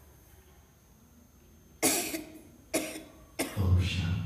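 A person coughing three times in quick succession, starting about two seconds in, close to the microphone.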